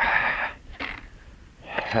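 A short breathy rush of noise, like an exhale, in the first half-second, then quiet until a man's brief 'eh' near the end.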